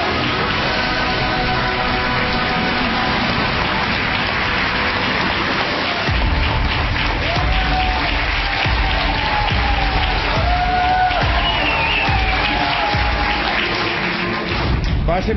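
Studio audience applauding over a talk show's theme music; about six seconds in, a heavy low beat comes into the music.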